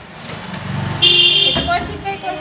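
A motor vehicle's engine rising as it approaches, then a loud, steady horn toot about a second in, lasting about half a second.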